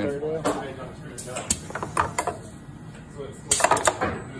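Mechanical clicks and clacks from a small belt-conveyor sorting station as a metal part is carried along it: a few separate clicks, then a quick burst of rattling clanks near the end.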